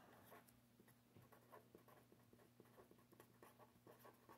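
Very faint felt-tip pen scratching on paper as a word is written by hand, in a quick run of short strokes, over a low steady hum.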